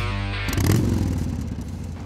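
Guitar-and-drum music breaks off about half a second in as a Yamaha Virago 1100's V-twin engine starts up with a brief rev, then keeps running.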